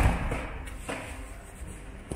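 A door slamming once, with a short echo in a large room, then a faint knock about a second later.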